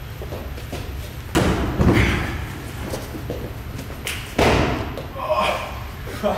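Two heavy thuds, one about a second and a half in and another about three seconds later, from jumping kicks and landings in a gym. Short exclamations from men follow each thud.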